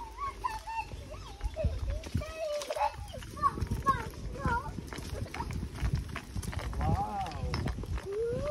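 Indistinct voices over the low, irregular thuds and rustle of horses walking on a dirt trail.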